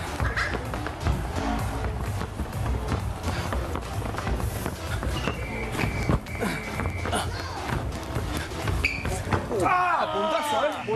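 A rally of head tennis over a table-tennis table: a light ball thudding off heads and the tabletop again and again, over background music and voices.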